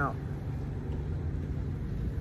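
Steady low rumble of an idling vehicle engine with a faint constant hum, mixed with wind buffeting the microphone.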